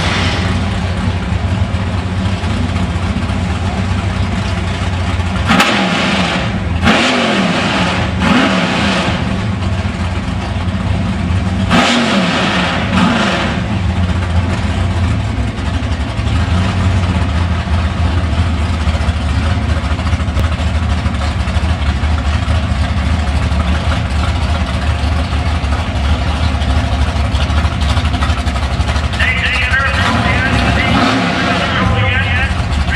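The 496-cubic-inch big-block Chevrolet V8 of a 1970 Chevelle, with a flat-tappet cam and full exhaust, idles steadily, with a few short throttle blips between about five and thirteen seconds in.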